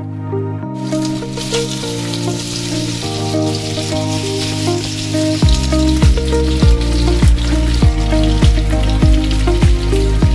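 Italian sausage pieces sizzling in a skillet, a steady hiss that starts about a second in, under background music that picks up a steady bass beat about halfway through.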